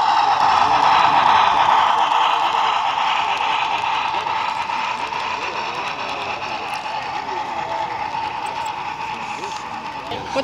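HO-scale model steam locomotives running on a layout, a steady hum that is loudest about a second in and slowly fades, over background crowd chatter.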